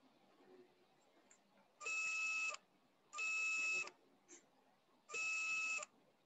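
Three electronic beeps of one steady pitch, each about three-quarters of a second long, the first two close together and the third after a longer pause.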